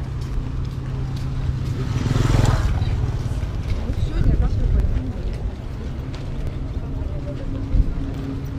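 Outdoor pier ambience: people talking nearby over a steady low engine hum. About two seconds in, a louder engine swells and fades away.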